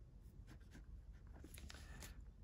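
Faint scratching of a pen drawing short strokes on sketchbook paper, the strokes coming closer together near the end.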